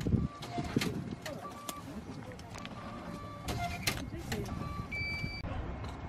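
Background chatter with several sharp clicks and a string of short electronic beeps, then one longer, higher beep about five seconds in.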